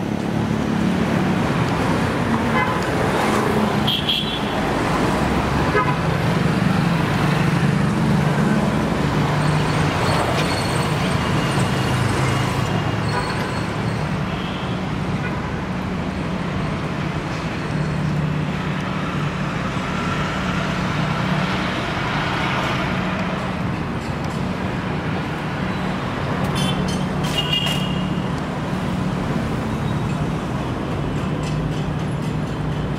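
Busy road traffic: vehicle engines running over a constant low hum, with a few short car-horn toots, one about four seconds in and more near the end.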